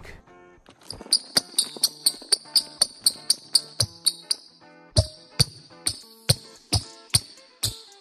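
Nike Sabrina 1 basketball shoes squeaking and slapping on a wooden gym floor in quick footwork. Fast foot strikes come about four a second with a high squeak over the first half, then after a short break they slow to about two a second. Background music plays underneath.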